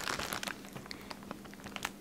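Faint crinkling of a plastic candy bag handled in the hands, with scattered small crackles.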